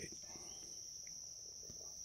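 Faint, steady high-pitched chorus of insects, like crickets, running unbroken.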